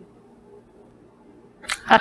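Quiet room tone, then near the end a short, loud burst of a person's voice.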